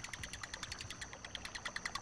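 Night insects chirping: a fast, even pulse of about ten chirps a second over a steady high trill, faint.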